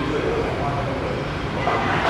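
Indistinct background voices over a steady low rumble of ambient noise.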